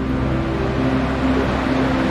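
Breastshot waterwheel turning with water rushing and splashing through it, over a steady low hum.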